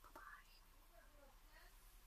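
Near silence: room tone with faint, distant voices.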